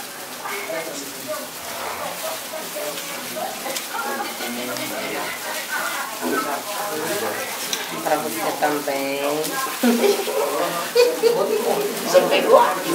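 Indistinct chatter of a room full of women talking at once, growing louder toward the end, with crinkling of plastic gift wrappers.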